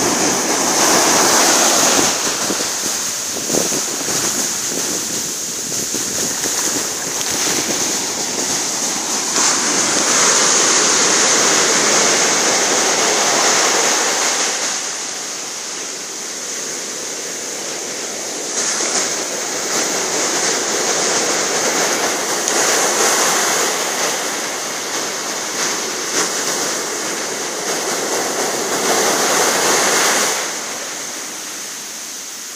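Sea surf washing onto a sandy beach: a steady rush of breaking waves that swells and eases every few seconds, with a steady high hiss over it.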